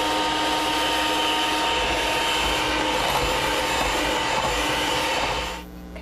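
Electric hand mixer running steadily with a whirring hum as it beats flour into milk batter, then switched off about five and a half seconds in.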